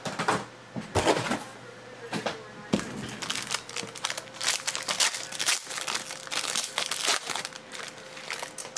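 Foil wrapper of a 2016 Panini Spectra trading-card pack crinkling and crackling irregularly as it is handled and torn open by hand.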